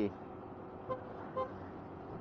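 Two short vehicle horn toots about half a second apart, over steady road and engine noise from a moving scooter.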